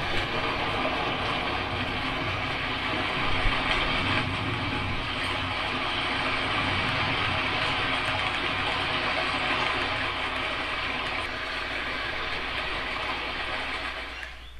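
A loud, steady rushing noise that swells slightly a few seconds in and drops away at the end.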